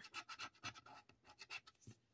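Faint, quick strokes of scratching as the latex coating is scratched off a Blackjack Tripler scratch-off lottery ticket.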